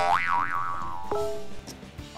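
Comic cartoon 'boing' sound effect: a sudden springy tone that wobbles up and down in pitch and fades over about a second, followed by a short steady note, as a musical sting.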